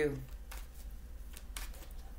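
Tarot cards being handled and shuffled, giving a few soft card flicks and snaps, over a low steady hum.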